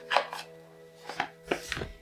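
A few sharp clicks and taps of a deck of tarot cards being picked up and handled before a draw. Faint steady background music runs underneath.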